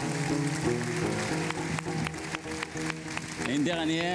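Gnawa music: a guembri, the Moroccan three-string bass lute, plucked in a repeating low line over a steady clicking beat, with a man's voice starting to sing near the end.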